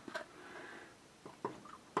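A few faint, light clicks and taps from a stirring utensil being handled at a small stainless saucepan of au jus mix and water, the sharpest tap near the end.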